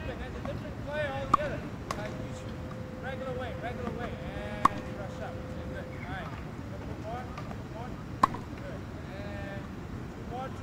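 Tennis racket striking a ball during a drill: three sharp pops about three and a half seconds apart, over faint background voices.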